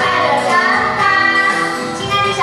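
A children's song: music with children's singing voices carrying the melody, steady and loud throughout.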